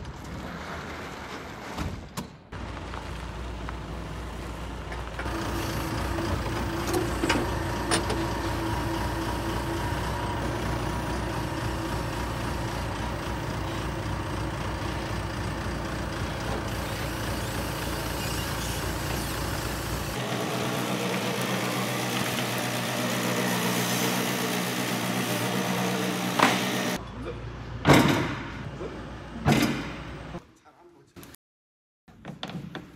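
A truck engine running steadily. Its tone changes about two-thirds of the way through, and a few sharp knocks come near the end.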